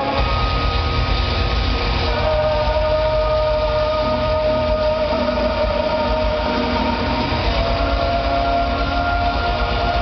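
Live symphonic metal band playing loud in a concert hall: long held notes that step to a new pitch about two seconds in and again near the end, over a dense, fast-pulsing drum beat.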